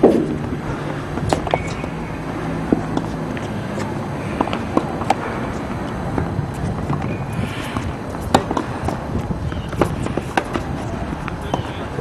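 Tennis ball struck back and forth in a doubles rally: sharp pops of racket strings on the ball, a second or more apart, over a steady low background hum.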